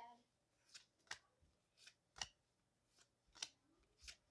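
Pokémon trading cards being flipped through by hand, each card slid off the front of the stack and snapped onto the back, giving about five short, soft card flicks at uneven intervals.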